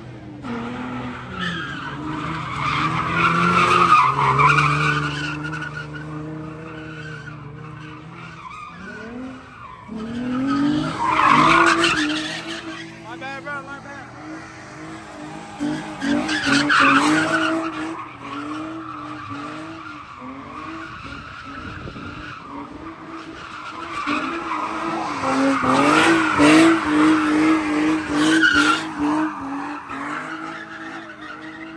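Nissan 350Z's V6 held at high revs while it spins donuts, its tires squealing and smoking on the asphalt. The engine note and tire noise swell in four loud surges, each time the car comes round.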